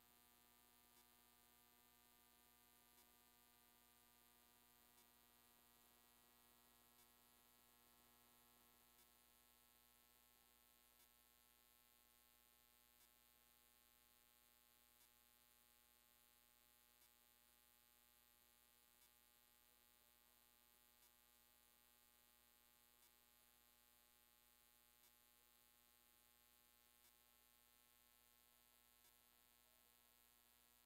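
Near silence: a faint steady electrical hum, with a soft tick about every two seconds.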